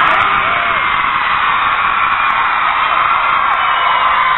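Audience of fans screaming and cheering together, a steady high-pitched wall of many voices.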